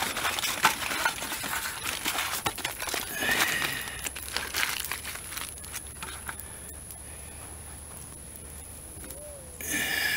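Aluminium foil crinkling and rustling as a potato is double-wrapped by hand, dense at first and dying away after about five seconds. A brief high-pitched call sounds about three seconds in and again near the end.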